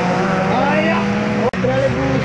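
Car engine running at steady revs as a car drives the circuit. The sound breaks off for an instant about one and a half seconds in, and an engine carries on after the break.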